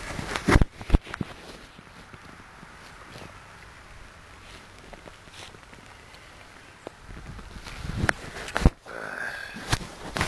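Sharp knocks and rustling from a hand-held phone being moved, in the first second and again in the last two seconds, with faint steady outdoor noise in between.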